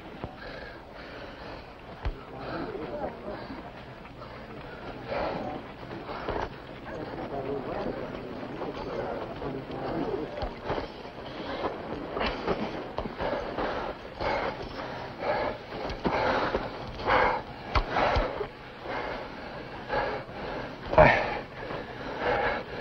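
A crowd of men shouting and calling out around a fistfight, with sharp punch and blow impacts landing at irregular intervals; the loudest blow comes about a second before the end.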